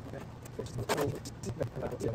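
Handling clatter from a bench multimeter's metal case during disassembly: a screwdriver working a case screw, then a run of clicks, light metallic jingling and knocks as the instrument is moved and set on end, with the loudest knock about a second in.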